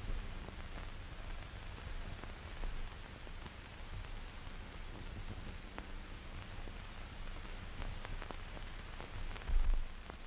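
Steady hiss and low hum of an old optical film soundtrack, with a few faint crackles and a low thump shortly before the end.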